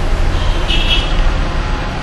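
Steady low background hum with an even hiss, and a faint short high tone about half a second in.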